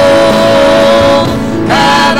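Worship song sung into a microphone over instrumental accompaniment: a voice holds one long note that ends a little over a second in, and a new sung phrase begins near the end.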